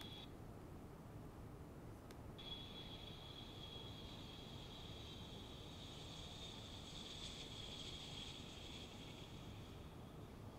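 Faint, high-pitched whine of a jet airliner's engines with a low rumble, heard from the projected video in a large room; it cuts out sharply for about two seconds near the start, then returns and swells around two-thirds of the way through as the aircraft passes close by.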